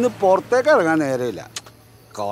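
A man's voice speaking in Malayalam, falling quiet about a second and a half in.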